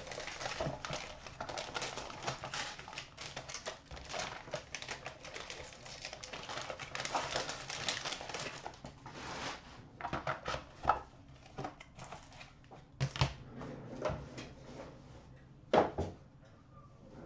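A foil-wrapped box and its paper packing being torn open and unwrapped by hand. Dense crinkling and crackling lasts about ten seconds, then gives way to scattered clicks and taps, with one sharp knock near the end.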